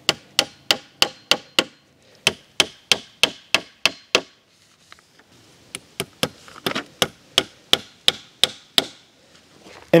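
Claw hammer driving plastic cap nails through plastic sheeting into wooden skids: quick runs of sharp strikes, about three a second, broken by two short pauses, about two seconds in and again around four to five and a half seconds in, stopping about a second before the end.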